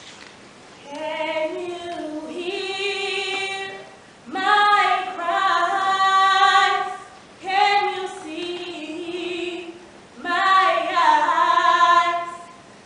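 A young woman singing solo without accompaniment, in sung phrases broken by short breaths every few seconds.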